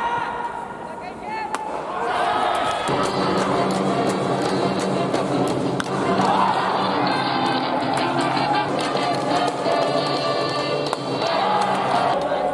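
Cheering-section band music with chanting from the stands at a baseball game. About six seconds in, a single sharp smack is heard as a pitch reaches the plate.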